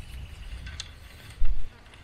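Light metal clicks of a hand fencing tool working high-tensile fence wire, over a low rumble of wind on the microphone, with a louder short low thump about one and a half seconds in.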